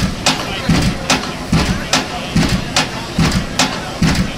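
Piling rig driving a pile, heavy blows repeating steadily at about two and a half a second.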